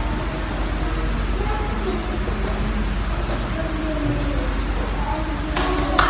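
Classroom room noise with a steady low hum and faint voices, then a single hand clap near the end.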